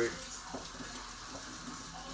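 Faint, steady sizzling of a snapper fillet cooking, with a light click about half a second in.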